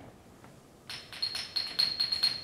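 Concert band percussion opening a piece: a quick run of light metallic strikes over a high ringing note, starting about a second in.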